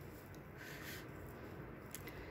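Faint rustling of a moth orchid's roots and old moss being handled, with a small click near the end.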